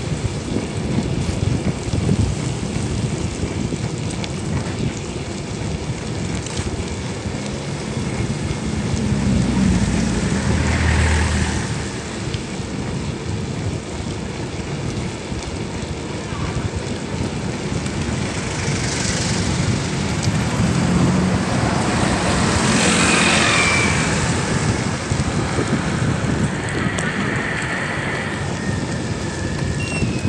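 Wind buffeting the microphone of a camera on a moving bicycle, with road traffic along the street. Vehicles pass louder about ten seconds in and again around twenty-three seconds in.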